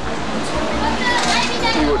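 People's voices talking close to the microphone, with a steady low rumble underneath.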